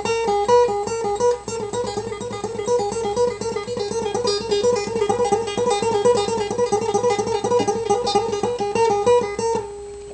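Acoustic guitar played with rapid tremolo picking on single fretted notes, moving through a short melody as the pitch steps up and down. It ends on a held note just before speech resumes.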